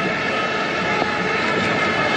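Stadium crowd at a football match, a steady continuous din.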